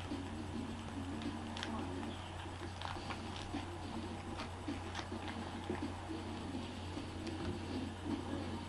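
Faint rustling and scattered light clicks from a trading card pack being opened and its cards handled, over a steady low electrical hum.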